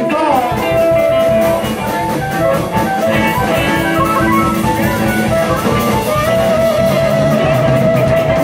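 Live blues-rock band jamming: electric guitar and a long held, bending lead line over a drum kit keeping a steady beat.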